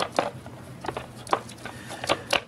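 A few light plastic clicks and rubs as a handheld vacuum's dust bowl and filter are handled.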